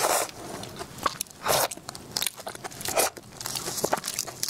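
Close-miked biting and chewing of a whole shell-on prawn: irregular sharp crunches of shell, loud right at the start and again about a second and a half in and near three seconds, with quieter crackling chews between.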